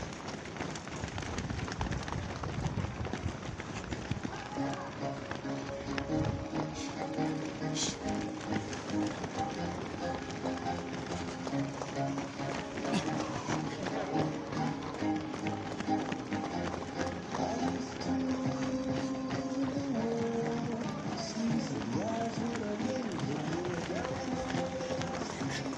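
Many runners' shoes pattering on asphalt as a large pack passes close by, with voices mixed in. From about five seconds in, music with steady held notes plays over the footsteps.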